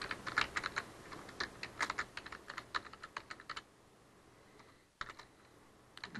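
Computer keyboard typing: a quick run of keystrokes for about three and a half seconds, a pause, then a few more keys near the end.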